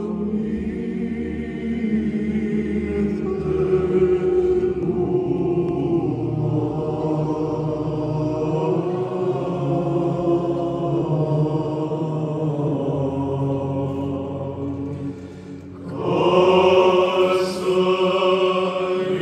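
Male choir of Orthodox clergy singing Byzantine chant with no instruments, the voices moving together in long held phrases. Near the end the singing drops away briefly, then comes back louder with a new phrase.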